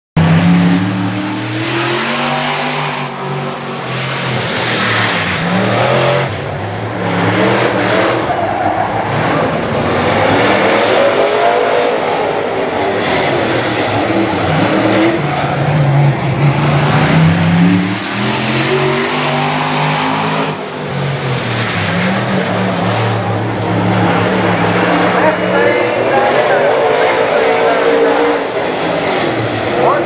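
A Limited Late Model dirt-track race car's V8 running hard on a qualifying lap, the engine note repeatedly rising down the straights and falling as the driver lifts into the turns.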